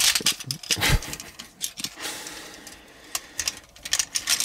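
Hard plastic parts of a Transformers combiner toy clicking and rattling as they are turned and pushed into place by hand, in a run of sharp small clicks.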